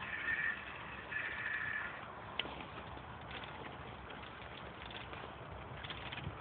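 Bicycle being ridden along a road: steady rolling noise with light rattles and a sharp click a couple of seconds in. Two short high squeaks come in the first two seconds.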